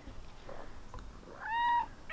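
A tabby kitten gives one short, high-pitched meow about one and a half seconds in.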